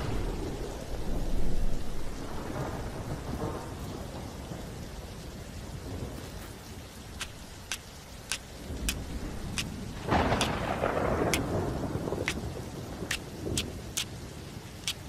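Heavy rain falling steadily, with a roll of thunder in the first few seconds and a second roll about ten seconds in. A scattering of sharp ticks sounds through the second half.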